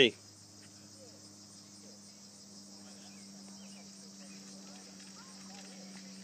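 A steady outdoor chorus of insects, a continuous high buzzing, over a low steady hum, with a few faint scattered chirps.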